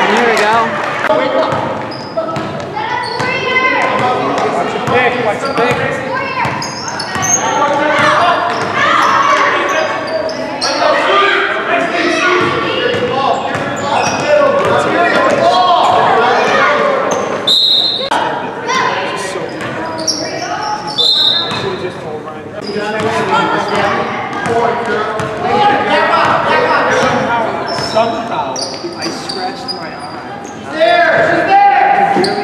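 Basketball bouncing on a hardwood gym floor during play, with spectators' and players' voices and shouts running throughout in a reverberant gym. Two short high-pitched squeaks come about halfway through.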